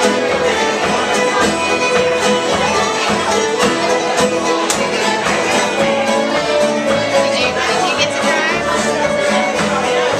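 A string band playing a bluegrass-style tune, fiddles in the lead over mandolin, guitar and upright bass, with a steady beat.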